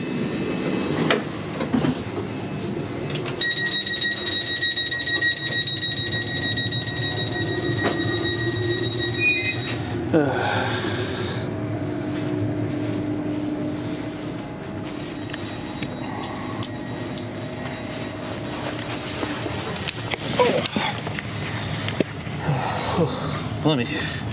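Inside a GWR Class 802 train: a steady high-pitched electronic tone, typical of the door-closing warning, sounds for about six seconds. It is followed by a lower steady hum from the train over the carriage rumble, with scattered knocks and rustles.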